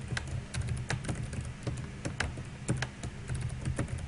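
Computer keyboard being typed on, keystrokes clicking in quick irregular runs as a password is entered and then entered again in the confirmation field. A low steady hum runs underneath.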